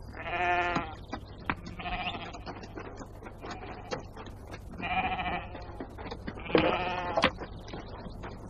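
A flock of sheep bleating: four separate wavering bleats, a second or more apart, as the flock is driven toward the well.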